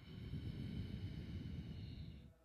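A long breath out, about two seconds, blowing against a close microphone as a low rumble.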